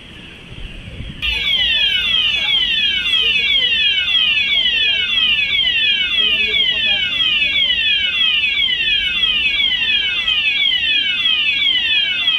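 Department store fire alarm sounders on the outside wall sounding the evacuation alarm: a whooping pattern of quickly repeating falling sweeps. It is quieter at first, then loud from about a second in.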